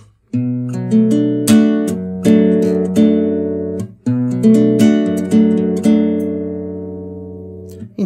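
Nylon-string classical guitar with a capo at the second fret, fingerpicked: an arpeggio pattern starting on a bass note and running up through the open treble strings, over the Em and Am7 chord shapes. The pattern is played twice, and the last chord is left ringing and fading.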